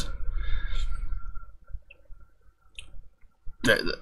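A pause in a man's talk, filled with faint room tone and a few small, faint clicks. His voice starts again near the end.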